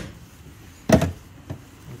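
A sharp plastic click about a second in, then a fainter click half a second later, as the EV charging connector latches into the Lexus NX450h+ charge port. The plug is seated, just before charging starts.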